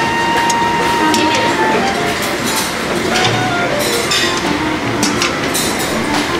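Breakfast buffet din: crockery and metal serving dishes clinking several times over background chatter and soft music.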